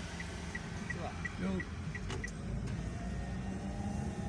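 Car cabin noise while driving: a steady low road and engine rumble, with the turn-signal indicator ticking about three times a second for the first two seconds or so as the car signals a right turn.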